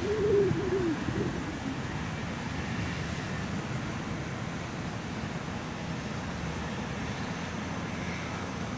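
A pigeon's low cooing call, wavering up and down for about the first second, over a steady low rumble of distant traffic.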